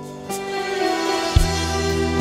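A live band plays an instrumental break in a slow pop ballad. Sustained keyboard chords run under a swell that builds, and about one and a half seconds in a bass guitar note and a drum hit come in strongly.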